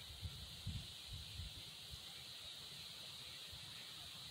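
Quiet background ambience: a steady faint hiss, with a few soft low bumps in the first second and a half.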